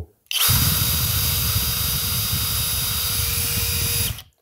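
Flex PD 2G 18.0-EC HD 18 V brushless cordless drill running unloaded in first gear without turbo, at about 565 rpm, with a contact tachometer pressed to the spinning bit. It starts a moment in and runs at a steady pitch, with a constant whine, until it cuts off at the end.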